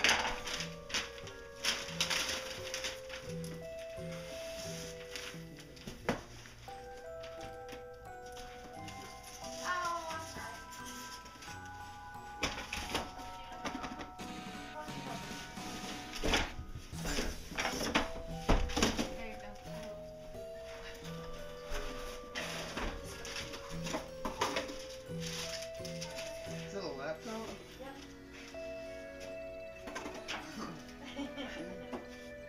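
Music playing in the background, with the rustling, crackling and scraping of a cardboard box and wrapping paper being opened by hand. The handling noise is loudest between about sixteen and nineteen seconds in.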